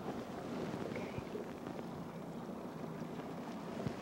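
Steady wind and sea-water noise on open water from a small boat, with a couple of faint knocks.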